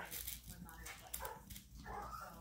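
Faint whimpers and yips from Chihuahua puppies at play, with a few small clicks.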